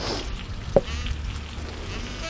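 Pork shoulder medallions frying in hot corn oil in a pan, a steady sizzle, with one short knock under a second in.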